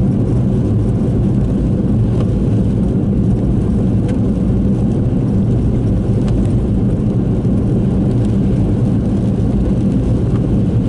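Car driving along a wet road: steady low engine and road rumble, heard from inside the car.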